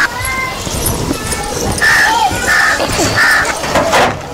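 A crow cawing three times in quick succession in the second half, with a few thinner bird calls earlier, over steady outdoor background noise.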